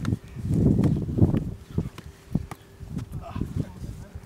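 Football being juggled close to a boom microphone: a run of short, irregular thuds as the ball is knocked up off the knee and foot.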